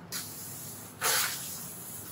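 A large sheet of flip-chart paper being flipped over the top of an easel pad, a short rustle followed about a second in by a louder swish of paper.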